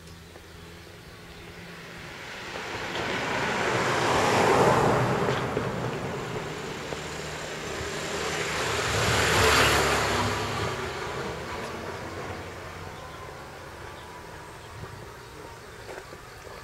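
Two vehicles passing close by, one after the other. Each is a rush of road noise that swells up and fades away: the first peaks about four and a half seconds in, the second about nine and a half seconds in.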